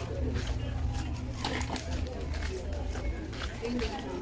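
Busy street ambience: people's voices talking nearby, scattered short clicks and taps, and a steady low rumble underneath.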